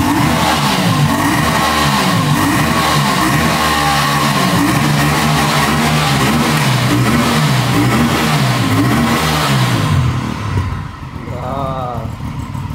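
Aprilia RS 457's 457 cc parallel-twin engine being revved on the stand, its exhaust note climbing and falling in a long series of throttle blips. It settles back to idle about ten seconds in.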